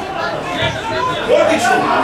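Several voices talking and calling out at a distance across a football pitch, a chatter of overlapping speech rather than a single close speaker.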